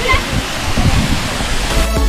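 Waterfall pouring into a rock pool: a steady rushing of water, with faint voices. Music with a beat comes in near the end.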